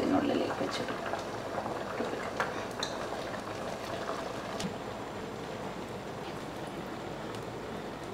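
A pot of rice water boiling on a gas stove, a steady bubbling hiss. A few light clicks come from a metal wire-mesh ladle knocking against the pots as the rice is scooped across.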